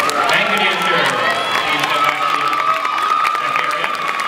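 Spectators cheering and shouting, with one long held high-pitched call and scattered clapping.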